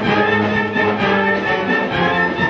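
Concert wind band playing live: clarinets, saxophones and brass in held chords over a tuba bass line.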